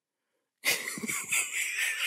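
A person's breathy, hissing vocal sound without clear pitch, starting about half a second in after a moment of silence.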